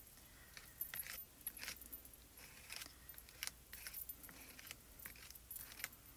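Faint scraping and scattered light clicks of a spatula spreading paste across a plastic stencil laid on cardstock.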